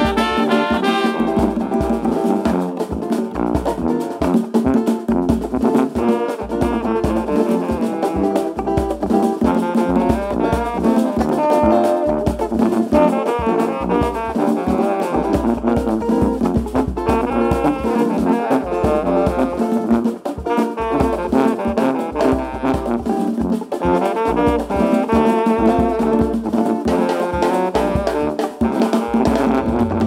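Live brass band playing, with a sousaphone bass line under saxophones and trumpet and a rhythm section of congas and drum kit.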